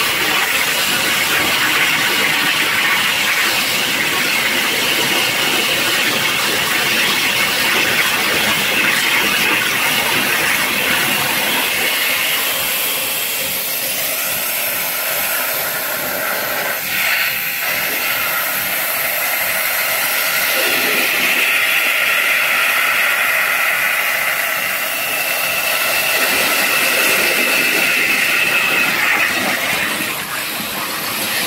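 Abrasive waterjet cutting a metal plate with 80-grit garnet at about 20,000 to 25,000 psi: a loud, steady hiss of the jet tearing through the plate and spraying into the catch tank. The tone of the hiss changes about halfway through.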